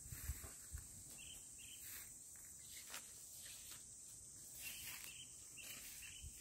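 Faint, steady high-pitched chorus of insects, crickets or cicadas, with a few soft knocks in the first second.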